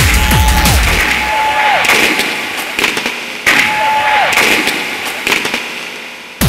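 Electronic tekno track in a breakdown: the kick drum drops out about a second in, leaving a held synth tone that slides down in pitch over noisy sweeps and crackling hits. The same falling-tone figure comes again about halfway through.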